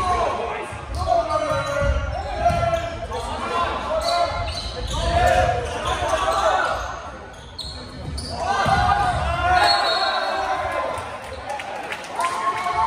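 Volleyball rally in a gymnasium: players and bench shouting and calling out, over the thuds of ball contacts and feet on the court, echoing in the large hall. The voices dip briefly near the middle, then rise again.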